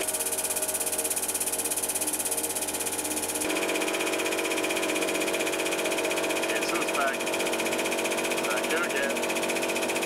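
Hydraulic press pump running steadily as the ram squeezes a wet sponge, a hum of several steady tones. It has a fast pulsing to it for the first few seconds, then changes tone about three and a half seconds in.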